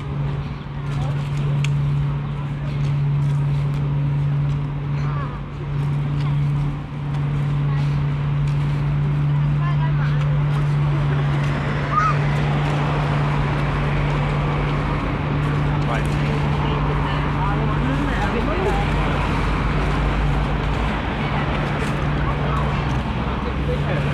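Outdoor park ambience beside a road: a steady low hum of traffic runs throughout, and passers-by talk, mostly in the second half.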